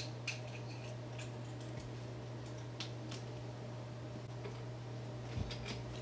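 Faint, scattered small clicks and ticks from the lamp's cable, plug and fittings being handled, with one sharper click at the start, over a steady low hum.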